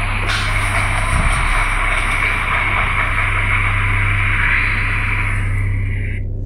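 A phone recording played back through the phone's own speaker: a steady hiss with a low hum underneath. The recording was made to catch a repeated 'tak tak tak' tapping near the ceiling.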